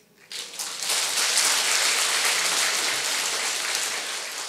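A large congregation applauding. After a brief hush, the clapping swells within about a second and holds steady.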